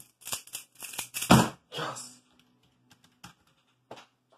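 Pyraminx puzzle turned very fast in a speedsolve: a quick run of plastic clicks and rattles, ending with a loud knock about a second and a half in, then a few faint clicks.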